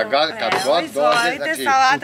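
Mostly people talking, with a few short knocks of serving dishes being set down on the table.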